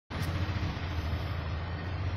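Steady low rumble with an even hiss of background noise, starting abruptly just after the beginning.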